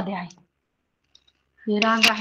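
A woman's voice speaking briefly, then a pause of just over a second, then speaking again; near the end a single sharp click, a pen tapping the interactive board as she starts drawing a line on it.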